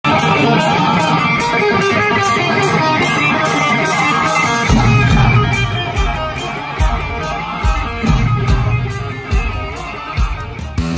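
A live rock band plays loud, amplified, with electric guitars over drums and steady cymbal strokes. Heavy bass and kick drum come in about halfway through.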